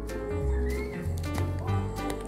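Cute, bouncy background music with a pulsing bass line and light clip-clop-like percussion clicks, with a short whistle-like glide about two-thirds of a second in.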